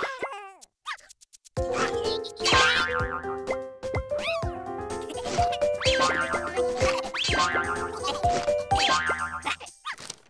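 Bouncy children's cartoon music with springy boing sound effects. A few short sliding boings come in the first second. The music starts about one and a half seconds in and runs with repeated stepping note patterns, with boing glides over it.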